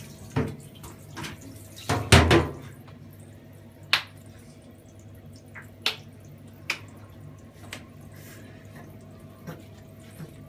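Water dripping and splashing in a bathtub around a wet puppy being washed: a handful of sharp drips and splashes, the loudest a couple of seconds in, over a faint steady background.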